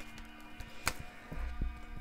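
Faint, soft background music of sustained tones. A light click about a second in and soft handling noise near the end come from tarot cards being picked up.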